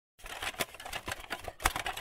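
A quick, irregular run of light clicks and taps, about a dozen in two seconds, like typing. The strongest fall about half a second in and about a second and a half in.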